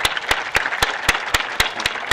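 Audience applauding in a tent, with one nearby pair of hands giving loud, evenly spaced claps about four a second over the general clapping.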